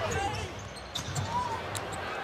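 Basketball court sound in an arena: sneakers squeaking on the hardwood and the ball bouncing, over steady crowd noise.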